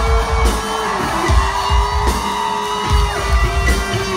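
Live rock band playing an instrumental passage: long held notes over steady bass drum beats, with bass and guitar underneath.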